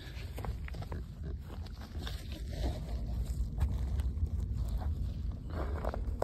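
Footsteps and handling noise, soft scattered clicks and rustles over a steady low rumble on a hand-held microphone, as a corrugated RV sewer hose is stretched out along its plastic hose support.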